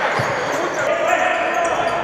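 Sound of an indoor futsal game echoing in a large sports hall: voices of spectators and players shouting, with the ball and players' shoes on the hardwood court.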